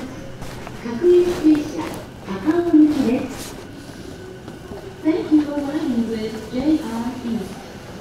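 Speech: a Japanese station platform announcement over the public-address system about the train standing at track 3, in two phrases with a short pause between.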